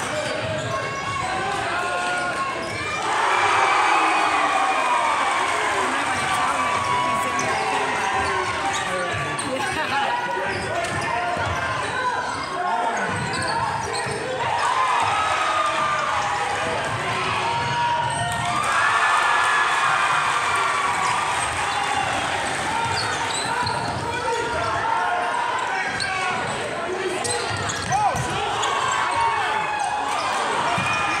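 Basketball game noise in a gym: a crowd of many voices calling and yelling, swelling louder about three seconds in and again past the middle, over a basketball bouncing on the hardwood floor. A sharp knock comes about two seconds before the end.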